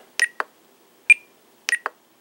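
Spektrum DX6 radio transmitter giving short, high electronic beeps and clicks as its menu settings are stepped through: two clicks just after the start, a single beep about a second in, and three quick clicks near the end.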